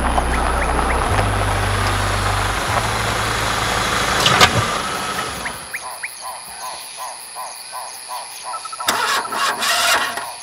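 A car drives up with its engine running and comes to a stop; the engine sound dies away about five and a half seconds in, leaving crickets chirping steadily. A short burst of noise sounds near the end.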